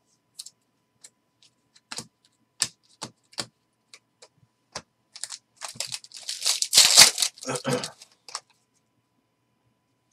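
Trading cards clicking and sliding against each other in short, separate taps. Then a foil Panini Contenders card pack crinkles as it is torn open, a dense rustle loudest about seven seconds in.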